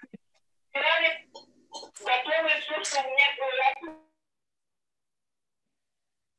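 A person's voice speaking for about three seconds, then cutting to dead silence about four seconds in.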